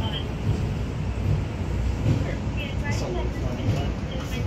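A high-speed glass-front observation elevator rising, with a steady low rumble from the moving car. Faint voices of the other riders come through now and then.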